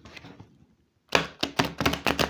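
A deck of tarot cards being riffle-shuffled on a wooden table. There is faint handling at first, then from about halfway a rapid run of sharp card clicks as the two halves are flicked together.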